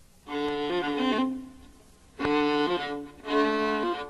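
Violin playing three short bowed phrases, each stepping through a few notes, with brief pauses between them at the opening of a dark electronic track.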